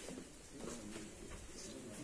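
Faint cooing of a pigeon, low and wavering.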